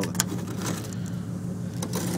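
Pickup truck engine idling steadily while it warms up, with a few faint clicks.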